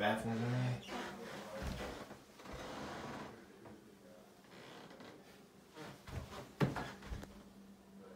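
A man's voice speaks briefly at the start, then quiet room sound follows, with a single sharp click or knock about six and a half seconds in.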